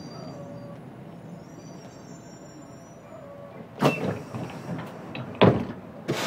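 Scania bus idling at a stop, with two loud thumps near the end as its pneumatic doors shut.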